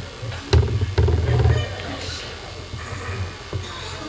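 Indistinct voices in a large room, with a sharp click about half a second in followed by a loud low thudding rumble that lasts about a second.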